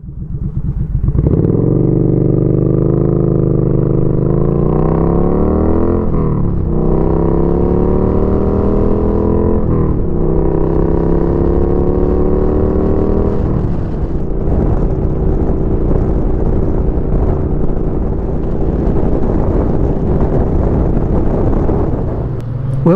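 2017 Triumph Street Twin's 900 cc parallel-twin engine, breathing through a Termignoni 2-into-1 full exhaust, pulling away and accelerating. Its pitch climbs and drops back with each upshift, then it settles into a steady cruise for the second half.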